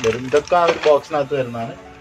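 A man speaking.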